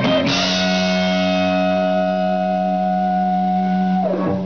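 Live rock band's distorted electric guitars hit a chord about a quarter second in and let it ring as one long held chord: the closing chord of the song.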